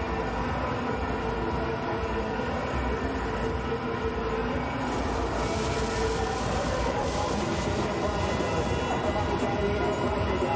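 Cricket stadium crowd din with steady droning tones after a six. About five seconds in, a CO2 jet cannon fires a loud, rushing hiss that lasts a couple of seconds.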